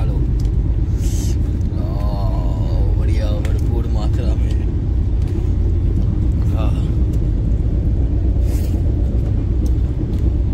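Steady low rumble of a passenger train running, heard from inside the coach, with voices talking briefly a couple of seconds in.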